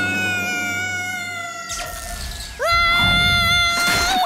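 An animated boy's voice screaming in long held notes while he falls. The first scream fades away, and a second, louder scream swoops up and holds from about two and a half seconds in. A faint whistle falls slowly in pitch under the first scream.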